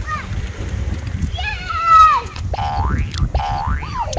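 Cartoon "boing" sound effects, a springy tone sweeping upward, repeating about three times some two-thirds of a second apart from about halfway through. Before them comes a falling, gliding pitched sound, and a steady low rumble runs underneath.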